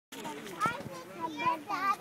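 A young child talking, the words not clear.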